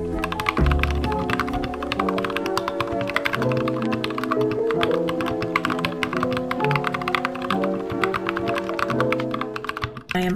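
Fast, continuous typing on a compact mechanical keyboard: many quick key clicks a second, over background music with held notes.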